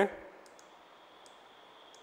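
A few faint, sharp clicks of a computer mouse: two close together about half a second in, one past a second, and one near the end. A faint steady high tone sits underneath.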